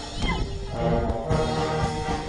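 Amateur brass band playing a march, with held brass chords and a drum beat after a brief dip at the start. A short high falling glide sounds about a quarter second in.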